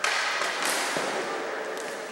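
A sharp crack from ball hockey play at the very start, echoing around a gymnasium and dying away. Two lighter knocks follow later.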